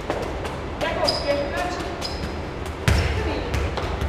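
A football being juggled and kicked: a string of sharp taps of foot on ball and ball on a concrete floor, with one heavier thud about three seconds in.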